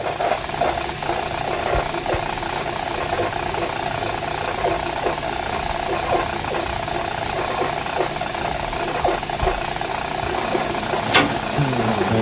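High-voltage and radio-frequency lab apparatus powering up and running: a steady electrical buzz and hiss with several high, steady whines and scattered crackles, starting abruptly.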